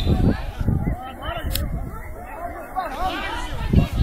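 Several voices chattering at once, bystanders talking at the edge of the pitch, with louder low surges at the start and again near the end.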